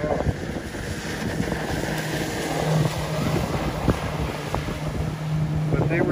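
Wind buffeting the microphone on an open pontoon boat, with a steady low hum from the boat's outboard motor idling from about two seconds in.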